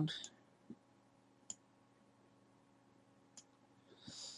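Three sparse, sharp computer mouse clicks a second or two apart, over a faint steady hum.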